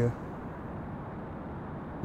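Steady, even background noise between spoken sentences, with no distinct events.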